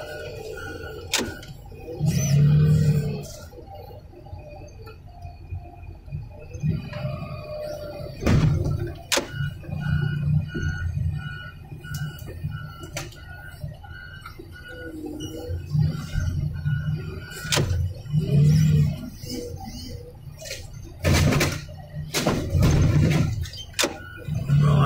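Hydraulic excavator with a car-crusher attachment at work: the engine surges repeatedly under hydraulic load, with sharp metal cracks and crunches as the jaws bear down on a Ford Crown Victoria's trunk. A string of short, evenly spaced beeps, about two a second, runs through the middle.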